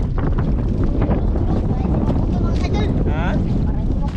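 Strong wind buffeting the microphone in a steady low rumble, with a brief voice falling in pitch a little before the end.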